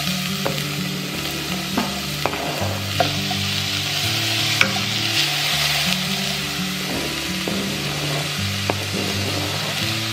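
Diced onion sizzling in hot avocado oil in a stainless steel saucepan, stirred with a wooden spatula, with a scattering of sharp taps against the pot.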